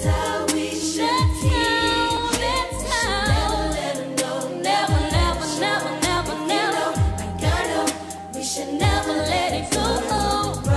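Female R&B vocal group singing in close harmony over a beat with drums and deep bass notes that slide downward every couple of seconds.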